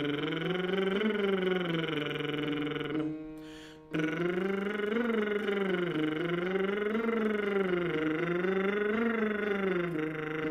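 A man's voice doing lip trills, a buzzing lip-bubble vocal exercise, sliding up and down in pitch in smooth sirens about one rise and fall every two seconds. This is a range-extension drill. Under it are held accompaniment notes, which sound alone for about a second around three seconds in.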